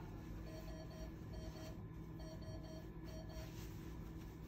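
Faint electronic alarm beeping in groups of three then two short beeps, repeated, the pattern used by medical equipment for a high-priority alarm, over a steady low hum.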